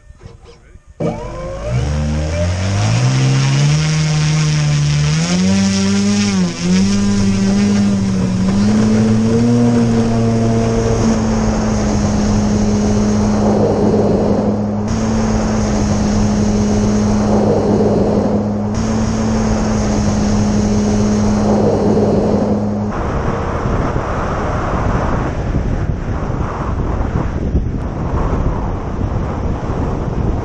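Electric motor and propeller of a quarter-scale Hangar 9 J3 Cub RC plane being gradually throttled up, its whine rising steadily in pitch for the first several seconds and then holding steady at takeoff power, with a whooshing swell about every four seconds. About two-thirds of the way through the motor tone stops, leaving wind noise on the microphone.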